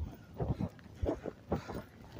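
Footsteps of a person walking on pavement, about two steps a second.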